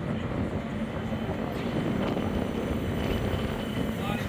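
West Midlands Metro tram running along a city street, a steady vehicle noise over general street sound.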